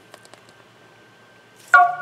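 Two or three faint clicks as the iPhone's home button is double-pressed. About a second and a half later a sudden, brief ringing tone sounds, the loudest thing here, fading as speech resumes.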